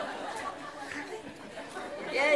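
Faint murmur of audience chatter in a large room, with no single voice standing out.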